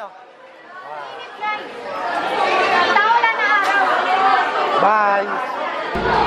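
Overlapping chatter of several voices talking at once, growing louder about two seconds in.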